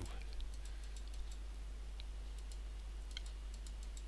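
Faint, irregular clicking of a computer mouse and keyboard being worked, with a couple of slightly sharper clicks near the middle, over a steady low electrical hum.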